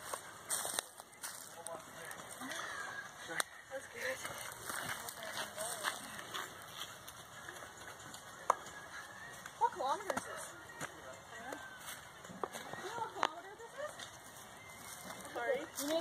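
Indistinct voices of people talking and calling at a distance, coming and going in short snatches, with a few sharp clicks.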